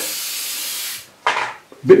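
Aerosol spray paint can hissing steadily as white paint is sprayed onto a board, stopping suddenly about a second in.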